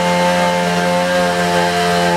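A small engine held at high revs: a loud, steady, even-pitched drone.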